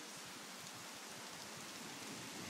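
Rain falling: a faint, steady hiss.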